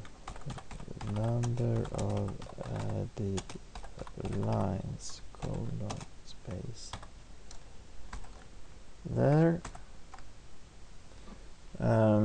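Typing on a computer keyboard: quick runs of keystrokes, thinning out in the second half.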